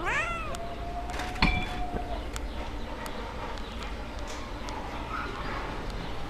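A cat gives one short meow right at the start, its pitch rising then falling. About a second and a half in there is a sharp knock.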